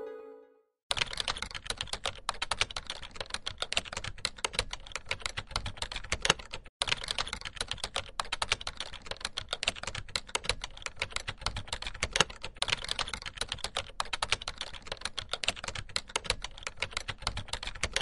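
Fast, continuous clatter of typing on a computer keyboard, with a short break about seven seconds in.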